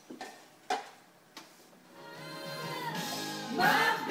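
A few sharp knocks, then a group of voices singing together: a long held note swells in from about halfway, and the whole group comes in loudly near the end.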